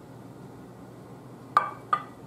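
A small ceramic bowl set down on a platter of crabs, giving two sharp clinks with a short ring, about half a second apart near the end.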